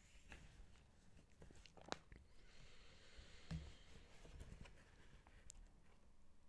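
Faint close-up sipping and mouth sounds from drinking out of a cup, with a few soft clicks and a soft thump about three and a half seconds in.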